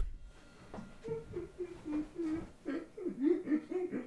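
A man laughing softly: a quiet, wavering voice from about a second in that breaks into a run of short chuckles near the end.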